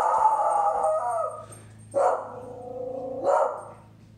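A dog barking at a lawn worker outside, in long, drawn-out howling barks: two long calls of over a second each, then a shorter, sharper one about three seconds in.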